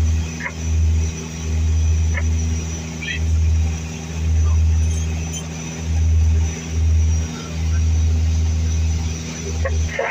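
Cockpit noise of a de Havilland Dash 8-200 turboprop on final approach: a loud, low drone from its two turboprop engines and propellers, swelling and fading in a slow, uneven beat.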